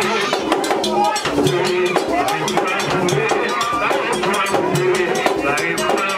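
Vodou ceremonial music: drums beating a fast, steady rhythm with voices singing over it.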